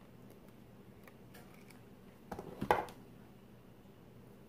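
Hard plastic clicks and clacks from a flat iron and paddle brush being handled and set down: a few faint ticks, then a quick cluster of clacks about two and a half seconds in.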